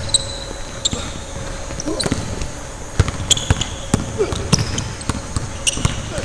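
A basketball dribbled on a hardwood gym floor in a large hall, with irregular bounces. Short high squeaks of sneakers come from players cutting and sliding.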